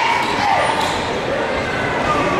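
A basketball dribbled on a hardwood gym floor during live play, with voices from players and spectators echoing in the hall.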